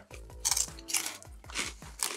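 People biting into and chewing crunchy cheese corn puffs, with a few short, crisp crunches.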